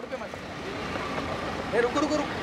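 Steady background noise of vehicles at a busy roadside, with a short burst of a voice near the end.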